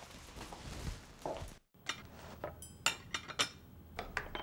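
Plates and cutlery clinking: several light clicks and clinks, some with a short ring, as a plate is set down and a fork works on a plate. They start about halfway in, after a soft room-tone stretch that drops out for a moment.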